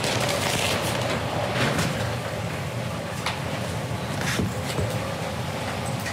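Courtroom room noise: a steady low hum with scattered rustles and soft knocks as a wheelchair is pushed across the floor and up to a table.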